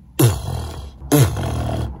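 Inward lip bass beatbox practice: two low buzzing notes made by drawing air in through relaxed, vibrating lips. Each begins with a quick drop in pitch and is held for under a second, about a second apart.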